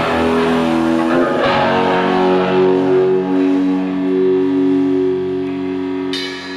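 Live band music: electric guitar chords struck a few times in the first second and a half, then left ringing with long, steady held tones underneath. It is the song's closing chord, beginning to fade.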